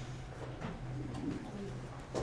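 Quiet room tone with a steady low hum and a few faint soft ticks.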